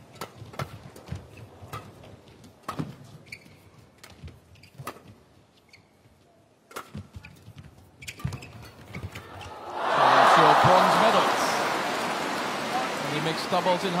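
Badminton rally: a run of sharp racket strikes on the shuttlecock, a few each second with short gaps. About ten seconds in, the rally ends with a point and the arena crowd breaks into loud cheering and applause that slowly dies away.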